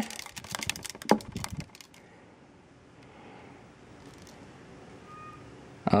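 A small clear container of fleas dusted with diatomaceous earth, closed with a solid lid, shaken by hand: a quick run of light clicks and knocks for about two seconds, with one louder knock partway through, then only faint room noise.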